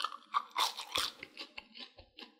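Someone biting into a crispy fried potato stick and chewing it: a loud burst of crunches, then a quick run of smaller crunches as it is chewed.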